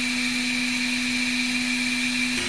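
Dremel Digilab 3D45 3D printer's cooling fans running: a steady whir with a low hum and a faint high whine.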